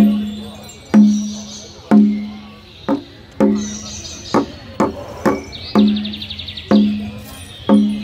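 Rhythmic percussion: a sharp, ringing, pitched stroke about once a second, each dying away before the next. Around the middle the strokes come quicker and less evenly, with a brief high buzzing rattle about six seconds in.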